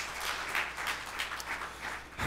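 A congregation applauding, a steady patter of many hands clapping at a modest level, given as praise at the preacher's call.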